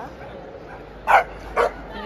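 A dog barks twice, short sharp barks about half a second apart, over the murmur of a crowd.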